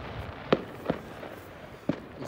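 Firework bangs: three sharp cracks, one about half a second in, one just before a second, and one near the end.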